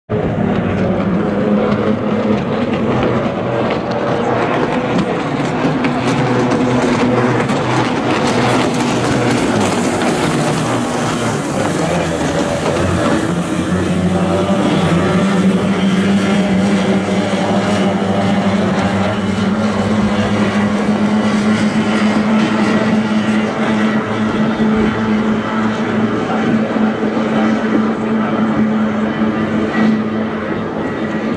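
Kyotei racing hydroplanes' two-stroke outboard engines running flat out as the boats race past. Several engine notes overlap at first, and one strong steady engine note dominates from about halfway.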